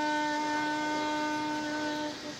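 Saxophone holding one long, steady note.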